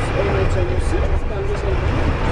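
Steady low rumble of a moving bus heard from inside the cabin, with voices talking over it.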